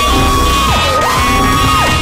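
Very loud, distorted edit sound effect: a high wailing tone that drops away and swings back up twice, over a dense, noisy bed of music and shouting.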